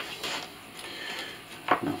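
Faint handling noise of an airsoft version 2 gearbox being moved about by hand: soft rustling and light clatter with no distinct strikes.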